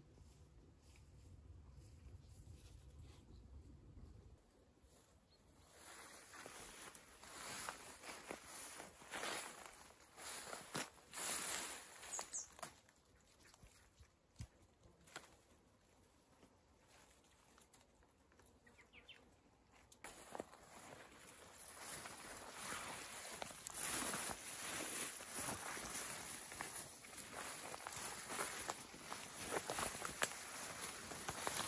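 Rustling of leaves and branches over dry leaf litter, with footsteps, as someone moves through woodland undergrowth: irregular crackling and brushing, loudest a few seconds in, then a steadier rustle in the last third.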